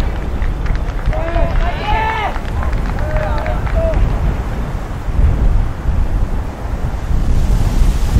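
Wind buffeting the microphone, a steady low rumble, with loud shouts from players on the football pitch between about one and four seconds in.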